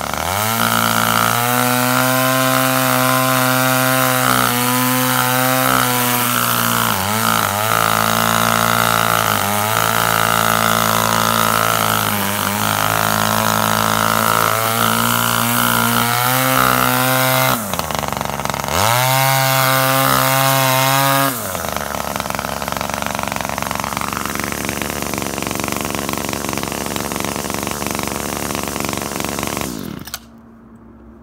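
BFS 40 petrol brushcutter engine (1 hp) revving at high speed as the line head cuts grass. It drops back briefly about two-thirds in, revs up again, then settles to a lower, steadier running for the last third. It is running again after its carburettor was cleaned and its porous fuel lines were replaced.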